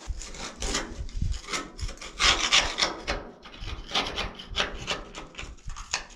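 A metal hand tool scraping dirt and gravel out of a crack in a gold dredge's steel trommel, in a series of short, uneven scraping strokes.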